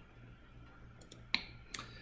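Four faint, sharp computer clicks in under a second, the third the loudest, as the presentation slide is advanced, over a faint steady low hum.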